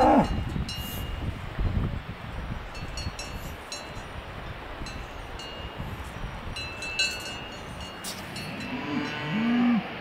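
Cowbells on grazing cows clanking and ringing on and off, with a cow mooing once near the end, a low call that bends in pitch.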